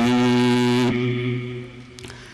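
A man's voice chanting one long held note, steady in pitch, that breaks off about a second in and trails away.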